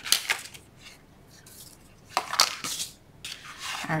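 A clear ruler being picked up and set down on a sheet of cardstock over a cutting mat, with light clacks and paper handling just after the start and again about two seconds in.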